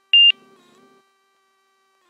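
A single short, high-pitched electronic beep from the cockpit's avionics or headset audio, about a fifth of a second long, over a faint steady hum.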